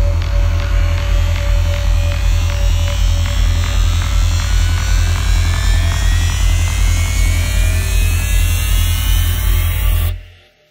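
Dark psytrance track with a driving, pulsing bass line and rapid, evenly spaced electronic percussion. High synth sweeps rise in pitch through the second half.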